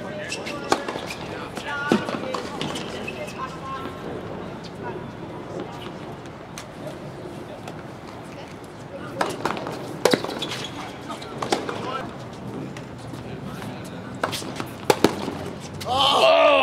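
Tennis racquets striking the ball in a doubles rally on a hard court: sharp single pops, a few about a second in and more in a quick run near the end, over a bed of distant voices.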